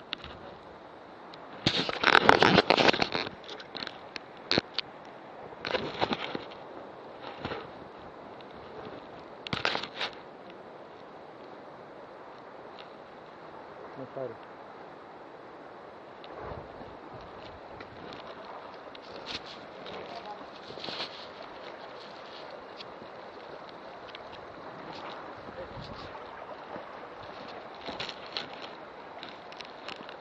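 Rustling and knocking from movement and handling around a body-worn action camera, in short bursts. The loudest burst comes about two seconds in, with smaller ones over the next eight seconds, all over a steady outdoor hiss.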